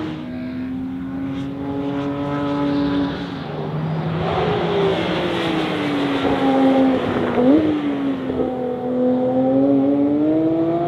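Porsche 911 GT3 RS naturally aspirated flat-six at high revs as the car passes along the circuit. The engine note slides lower as it goes by, jumps up sharply about three-quarters of the way through at a gear change, then climbs again near the end.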